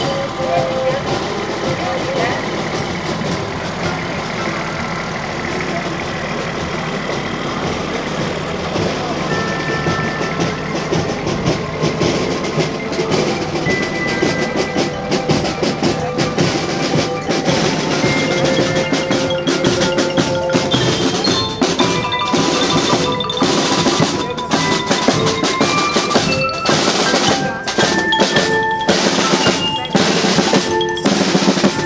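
A marching band drawing near: bell lyres play a melody of short ringing notes over snare and bass drums. The band grows louder, and the drum strokes are most prominent near the end.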